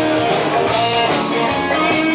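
A blues band playing live, guitar to the fore in an instrumental stretch of the song, with no singing.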